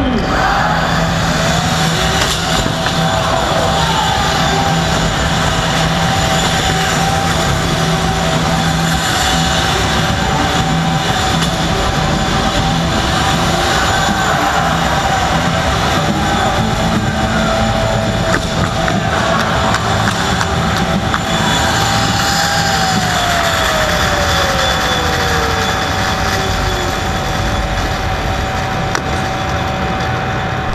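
Crowd din and machine noise in a large hall around a robot combat arena, with a steady high electric whine held nearly throughout; past the middle the whine drops steadily in pitch over a few seconds.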